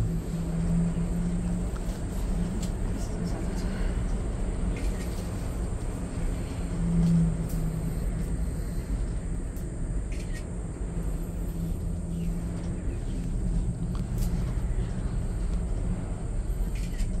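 Ngong Ping 360 cable car cabin in motion: a steady low rumble with a low hum that swells briefly a few times. A few faint clicks are scattered through it.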